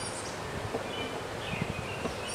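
Quiet outdoor ambience with a steady low hiss and a few faint bird chirps. A couple of soft wooden knocks come about a second and a half in, as a wooden beehive frame is set down into a nuc box.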